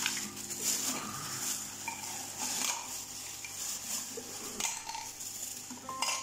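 Clear plastic packaging crinkling and rustling as the gravel cleaner's plastic tubes and flexible hose are unwrapped and handled, with light clicks and knocks of the plastic parts.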